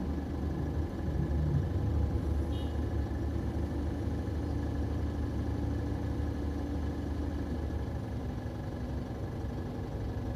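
A car's steady low rumble heard from inside the cabin.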